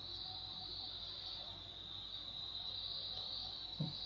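Steady high-pitched insect-like trill in the background, with a brief low sound near the end.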